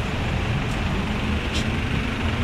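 Steady low rumble of a motor vehicle engine running, with two faint short ticks a little under a second apart.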